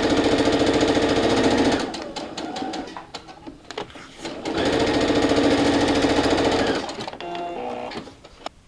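Electric sewing machine running a straight stitch through quilting cotton in two runs, one of a little under two seconds and one of about two seconds, with a quieter pause of scattered light clicks between them.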